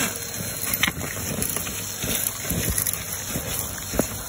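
Numatic Henry 200 vacuum cleaner running steadily, its metal wand sucking at a mound of loose soil and leaves, with bits of soil and grit crackling up the tube.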